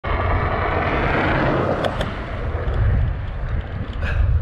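Wind rumbling on a handlebar-mounted camera's microphone while cycling, with the hiss of a passing motor vehicle that fades away about halfway through. Two sharp clicks sound about two seconds in.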